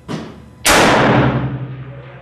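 A scoped rifle firing one shot from a bench rest: a single very loud report about two-thirds of a second in, echoing for about a second as it dies away. A shorter, quieter crack comes just before it.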